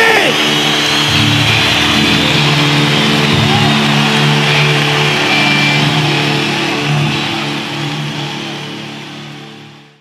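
A live rock band's final chord held on distorted electric guitars and bass, ringing out steadily and then fading away over the last few seconds.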